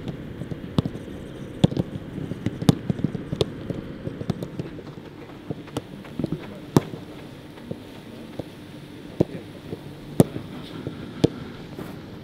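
Footballs being struck by players' boots in a passing drill on a grass pitch: sharp, irregularly spaced kicks, one or two a second.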